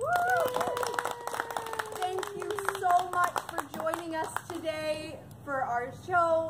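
A small audience applauding with scattered hand claps that start suddenly. A long, slowly falling vocal whoop is held over the first few seconds, and voices call out after it.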